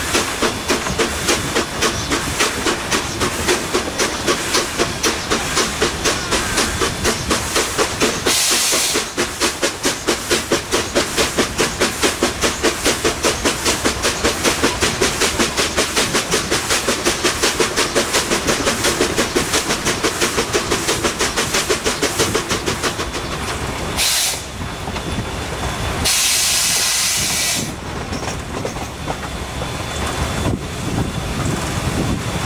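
Steam locomotive running at speed, heard close to its cylinders: rapid, even exhaust chuffs with steam hissing, and a short loud hiss of steam about eight seconds in. The chuffing fades out about two-thirds of the way through, leaving the running noise of the train, broken by two more bursts of steam hiss near the end.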